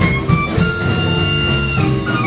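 Traditional jazz band playing live: clarinet and horns over piano and drums. A high wind note is held from about half a second in until near the end.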